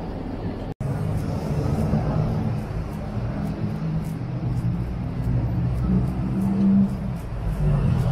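City street traffic: the steady low rumble of car engines and tyres on the road, broken briefly by a cut about a second in.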